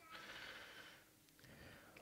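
Near silence, with faint breath noise picked up by a headset microphone.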